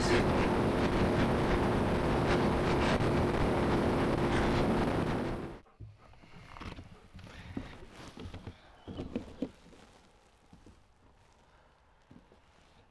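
BMW S 1000 XR four-cylinder engine held flat out at top speed in sixth gear, a steady engine note under heavy wind roar. It cuts off suddenly about halfway through, leaving a few faint knocks and then near silence.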